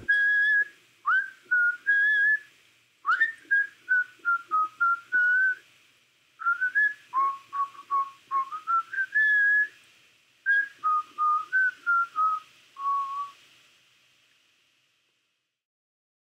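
A whistled tune with nothing else playing, in four short phrases separated by brief pauses, ending well before the end.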